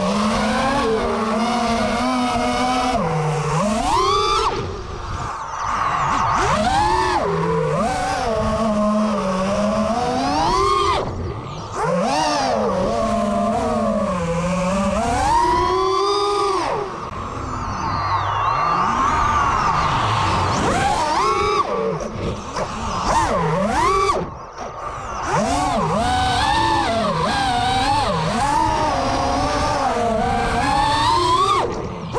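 Brushless motors and propellers of an FPV racing quadcopter heard from its onboard camera, whining steadily. The pitch rises and falls every second or two as the throttle is punched and eased through turns and climbs.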